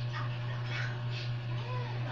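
Soft rustling of items being handled, over a steady low hum. A short squeaky, pitched cry that rises and falls comes near the end.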